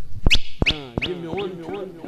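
A man laughing into a microphone, a run of short sharp bursts about three a second, heard through a sound system.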